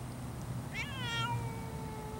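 Savannah cat giving one long, drawn-out meow, starting just before a second in with a wavering onset, then holding a slowly falling pitch.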